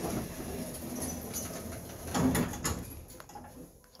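Elevator door sliding with a low rumble, swelling about two seconds in with a few knocks, then dying away near the end.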